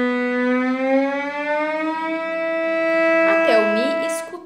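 A bowed cello note on the A string: a held B that slides slowly and smoothly up with one finger to E in a single glissando, the shift from first to fourth position, and the E is then held.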